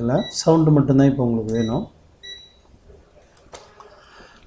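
A man talking, then a few short faint electronic beeps from a Fluke digital multimeter's beeper, and a single click near the end.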